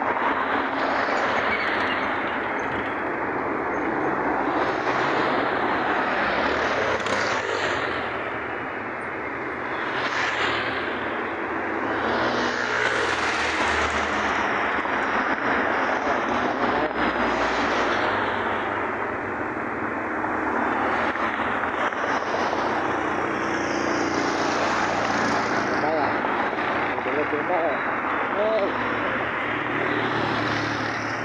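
Steady road and wind noise from riding in a moving vehicle, with the rush of other traffic swelling past every few seconds.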